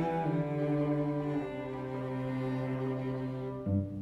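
String trio, cello and upper strings, bowing a slow, sustained passage, with the cello holding long low notes under the violin lines. About three and a half seconds in the harmony changes: the cello moves to a new note and the upper strings briefly thin out.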